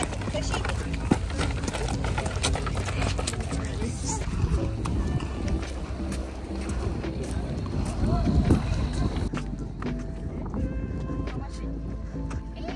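Footsteps on bare granite rock, short sharp steps, with a steady low wind rumble on the microphone and indistinct voices. Background music with steady held notes comes in near the end.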